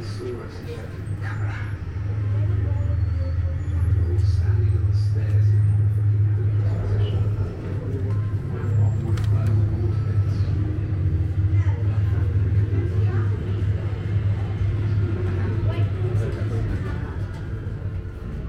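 A deep, steady low rumble swells up about two seconds in and eases off near the end, with faint voices and a few small clicks over it.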